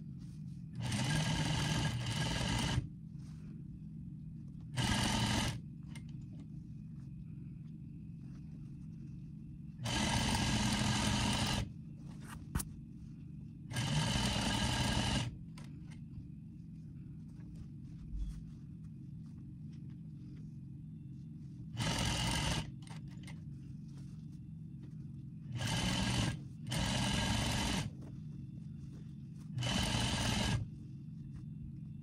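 Industrial sewing machine stitching in about seven short runs of one to two seconds each, stopping between them while the fabric is repositioned. This is a top-stitch joining two hat layers. A steady low hum continues in the gaps between runs.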